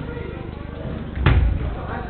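Football struck hard: one loud thud about a second in, with a short ring-out in the hall, over distant players' voices.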